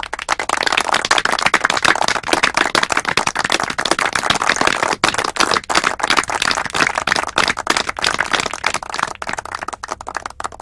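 A group of people clapping their hands: a dense, steady patter of many claps.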